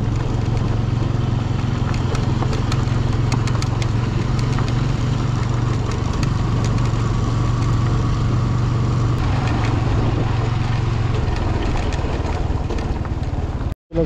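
Motorcycle engine running steadily at low speed, with wind and tyre noise from riding on a gravel track. There are a few scattered clicks in the first few seconds, and the sound cuts off suddenly near the end.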